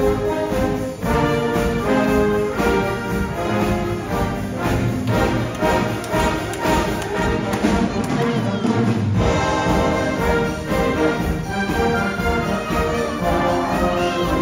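Concert band of brass, woodwinds and percussion playing a dance medley with a steady beat, the brass carrying the tune.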